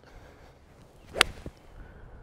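Mizuno MP20 MMC forged iron with a copper underlay striking a golf ball: a single sharp click of impact about a second in.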